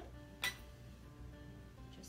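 Soft background music, with one sharp clink about half a second in as a metal mason jar lid is picked up off the tabletop.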